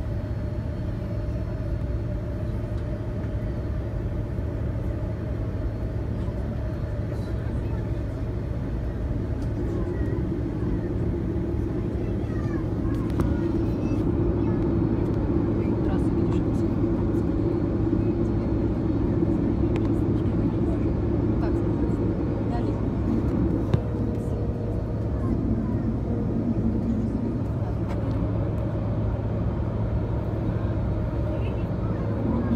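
Airbus A330-200 cabin noise while taxiing: the steady hum of its Pratt & Whitney PW4000 turbofans and cabin air, growing somewhat louder about halfway through as the engines pick up.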